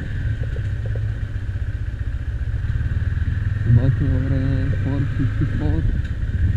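Motorcycle engine running steadily while riding, heard from on the bike as a continuous low rumble mixed with wind on the microphone. A man's voice comes in briefly near the end.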